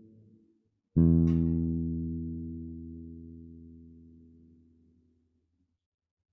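Acoustic guitar struck once about a second in: a low chord rings and fades away over about four seconds. The tail of an earlier strum dies out at the start.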